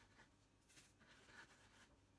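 Faint rubbing and light scraping of hands rolling pandesal dough on a breadcrumb-dusted wooden board, with a cluster of soft strokes from about a second in.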